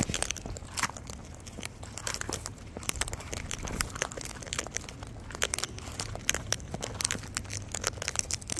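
Sulphur-crested cockatoos cracking and husking sunflower seeds and raking through a tub of loose seed mix with their beaks: a rapid, irregular run of crunches and clicks.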